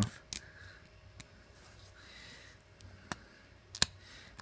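Fingers picking at the thin PETG brim of a small 3D print, giving a few sharp plastic clicks and snaps spaced out over the seconds, with a close pair near the end.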